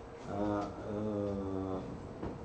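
A man's drawn-out hesitation sound, a level held "eh" lasting about a second and a half.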